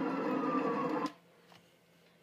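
An ambulance siren wailing with a slowly falling pitch, heard as vlog audio played back through a computer speaker. It cuts off abruptly about a second in, and silence follows.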